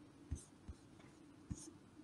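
Faint soft knocks and clicks of handling at a desk, three short ones spread over two seconds, over a quiet background.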